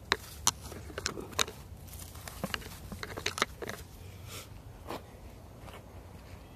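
Dry mulch and soil crackling and crunching as a ginger plant is pushed back into the ground by hand: a scatter of about a dozen sharp crackles, most of them in the first four seconds.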